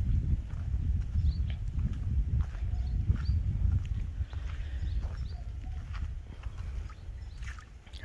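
New Holland TS90 tractor's diesel engine idling with a steady low rumble, with a few faint clicks over it.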